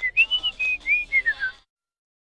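A short whistled tune of about seven clear notes, the last few stepping down in pitch, ending about one and a half seconds in.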